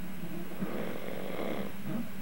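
A sleeping man snoring through his open mouth: one long, rough breath that swells about half a second in and fades near the end, over a steady low hum.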